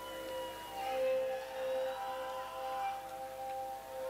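Sustained electric guitar feedback from a rock band's amplified stage sound. A few steady held tones ring on; one slides up at the start and another drops in pitch about a second in.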